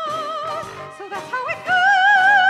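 A high, operatic-style singing voice holds a note with wide vibrato, sings a few short notes, then slides up to a higher held note near the end, over musical accompaniment.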